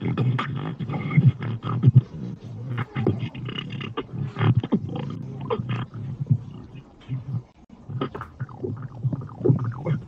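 Beatboxing coming through a video chat: fast percussive mouth sounds over a deep, heavy bass. It drops out suddenly for a moment about seven and a half seconds in, then picks up again.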